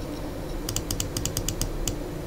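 A quick run of about a dozen light clicks at the computer, like typing on a keyboard, packed into a little over a second, over a faint steady hum.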